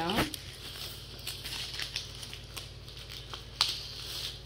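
Clear cellophane gift bag crinkling and rustling as hands gather it and tape it down around the bow, with one sharper crackle near the end.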